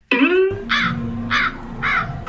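Crow cawing three times, about half a second apart, after a sudden opening sound that falls in pitch: a comic sound effect edited in to mark an awkward blunder, the pancake having been dropped into the soup.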